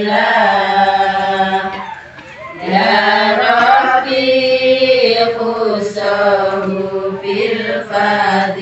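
A group of women singing Islamic devotional sholawat together in a chant, with long drawn-out, slowly gliding held notes. The singing dips for a breath about two seconds in, then resumes.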